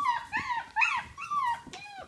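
A six-week-old blue Weimaraner puppy whining in a quick run of about five or six short high cries, each rising and falling in pitch.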